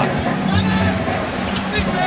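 Basketball being dribbled on a hardwood arena court, a few separate bounces, over steady arena crowd noise and a held musical tone.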